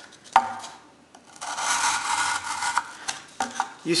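Kershaw Leek pocket knife's thin hollow-ground blade slicing through cardboard: a sharp click about a third of a second in, then a steady scratchy rasp of about two seconds as the cut runs through the strip.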